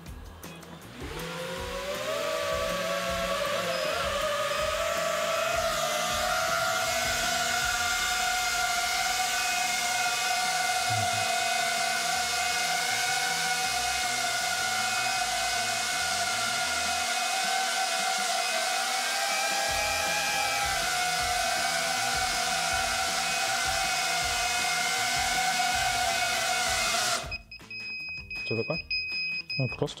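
Small FPV drone's ducted propellers spinning up at takeoff about a second in, then a steady high-pitched whine while it hovers, wavering slightly in pitch with the throttle. The whine cuts off suddenly near the end as the drone is caught by hand.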